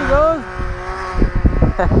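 A snowmobile engine runs faint and steady as the machine moves off across the lake. Wind buffets the microphone in the second half, and a short laugh comes right at the end.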